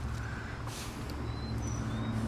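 Outdoor background with a steady low mechanical hum and a few faint, short, high bird chirps.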